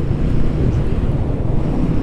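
Steady wind rush buffeting the microphone of a camera on a moving Royal Enfield Guerrilla 450 motorcycle, with the bike's engine and road noise low underneath.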